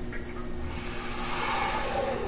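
A man taking a slow, deep breath in, a soft airy hiss that grows a little louder, over a faint steady room hum.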